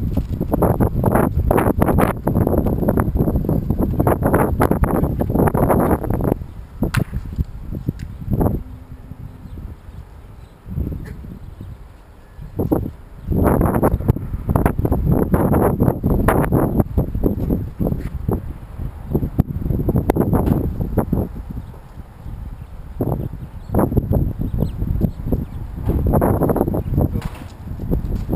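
Wind buffeting the microphone in loud gusts lasting several seconds, easing off for a while partway through, then gusting again.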